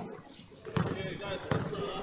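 A basketball being dribbled on a hard outdoor court: a couple of sharp bounces about three-quarters of a second apart.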